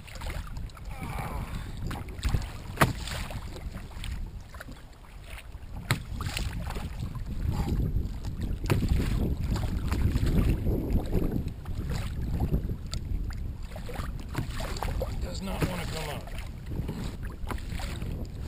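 Wind buffeting the microphone and water washing against a kayak hull on choppy open sea, with a few sharp clicks.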